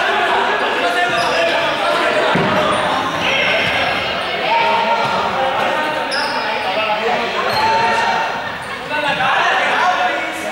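Balls bouncing and thudding on a sports-hall floor among students' shouts and chatter, echoing in a large gym, with one louder thud about two seconds in.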